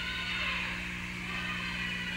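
Steady low electrical hum under faint room noise of a large, sparsely filled hall, with no distinct event.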